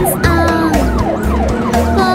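Cartoon police siren sound effect: a rapid up-and-down yelp of about four sweeps a second, over children's song music with a steady bass beat.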